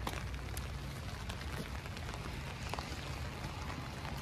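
Light rain falling on wet pavement: a steady hiss with scattered faint ticks of drops, over a low rumble.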